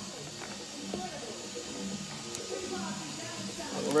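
Faint voices in the background over a low steady hum, with a light click a little past the middle.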